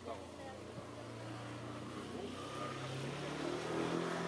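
A low steady engine hum, rising in pitch and growing louder in the second half as if a motor vehicle is approaching, with faint wavering voices or calls above it.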